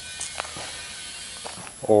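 A pause in a man's talk: a faint, steady background hiss with a few small clicks. His voice starts again near the end.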